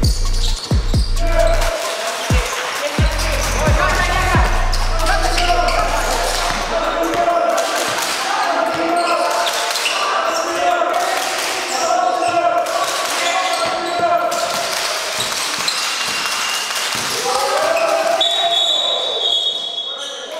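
A basketball game in a gym: a ball bouncing on the wooden court a few times early on, and players shouting with the echo of the hall. A held low bass note of background music runs under the first few seconds and then stops. Near the end a referee's whistle sounds as a steady high tone.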